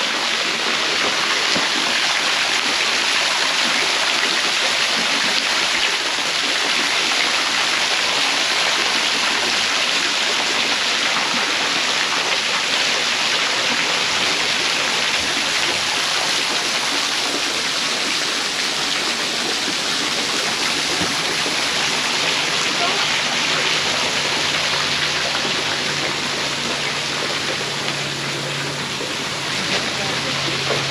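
Water rushing steadily down a stone-cut channel, a constant even rush with no breaks.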